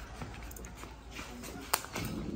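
Quiet background with a few faint knocks and one sharp click near the end.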